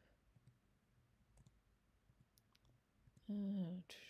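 Quiet room tone with a few faint, scattered clicks as a computer is clicked back through presentation slides, then a short spoken 'uh' near the end.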